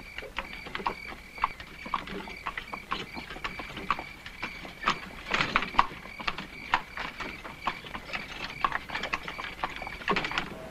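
Horse's hooves clip-clopping at a walk on a gravel drive as it pulls a carriage, in irregular strikes a few times a second that grow louder for a moment about halfway. A steady high-pitched tone runs underneath.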